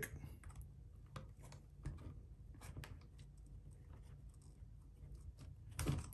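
Faint, irregular small clicks and scratches of a metal pick and hinge pin against a plastic RC-car suspension arm as the pin is worked into place.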